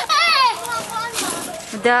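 A toddler's high-pitched squealing voice, rising and falling in the first half-second, then quieter, with a lower speaking voice coming in near the end.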